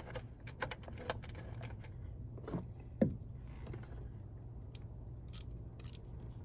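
Scattered small metallic clicks and taps as a screw is lined up by hand in the door check strap mount of a Jeep Wrangler door, most of them in the first second, over a low steady hum.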